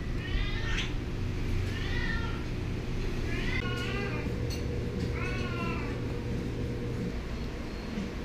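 A cat meowing four times, each meow under a second long and rising then falling in pitch.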